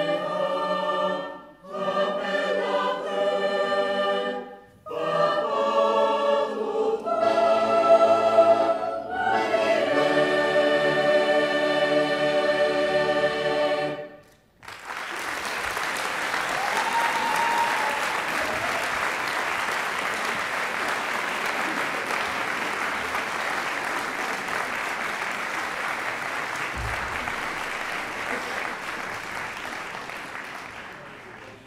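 A large choir sings the closing phrases of a song, with short breaks between phrases, and ends on a long held chord. About halfway through, the audience breaks into applause that runs on and fades near the end.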